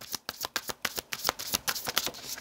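A deck of cards being shuffled by hand: a quick run of short clicks, about seven or eight a second.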